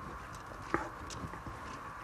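A wooden spatula stirs uncooked rice grains and mixed vegetables in a pot, making a soft scraping with a few light clicks. One click, about three-quarters of a second in, is sharper than the rest.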